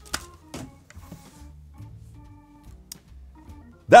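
Quiet background music with long held low notes. A few light clicks come with it, near the start and about three seconds in, from the small guitar effects unit being handled.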